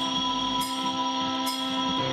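Electric guitar and bass played through amplifiers: a band jamming, with sustained chords and a regular sharp accent a little under once a second.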